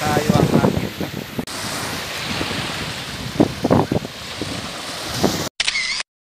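Small waves washing up a sandy beach, with wind blowing on the microphone. A voice is heard briefly at the start and again about halfway through.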